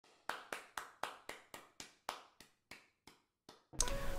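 A series of short, sharp clicks, about four a second at first, then slowing and growing fainter until they stop.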